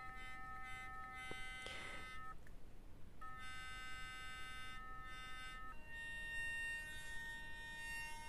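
Nandme NX7000 sonic electric toothbrush running with no brush head fitted, a faint steady buzz of several pitches at once. It stops about two and a half seconds in, starts again about a second later, and changes pitch near six seconds as the brush is switched to another cleaning mode.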